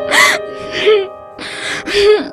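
A woman crying, with a few sharp gasping sobs and short whimpers, over steady held notes of background music.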